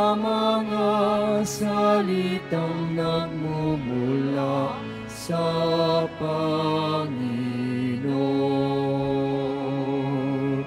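A slow hymn sung during the Mass: a voice holding long notes with vibrato, moving stepwise from note to note over steady low accompaniment.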